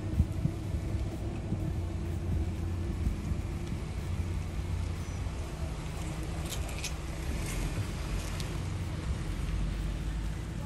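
Wind buffeting the microphone outdoors as a steady low rumble, with a few faint light clicks about seven seconds in.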